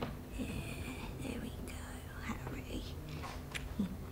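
A woman's quiet laugh, then breathy whispering under her breath.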